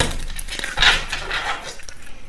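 A brand-new, slippery tarot deck being shuffled by hand: cards sliding and rustling against each other in short bursts.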